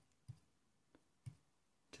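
A few faint, sharp taps of a fingertip knocking on a piezo disc used as the knock sensor of an Arduino knock lock, entering knocks to unlock it.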